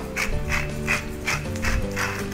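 Hand-held salt grinder being twisted, its grinding mechanism giving a quick run of ratcheting clicks, about four a second, over background music.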